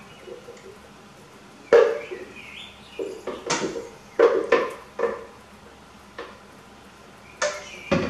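A wooden spatula knocking and scraping against a blender jar as thick blended chili is poured out into a pot. The knocks come at irregular intervals: the first and loudest about two seconds in, a cluster a few seconds later, and one more near the end.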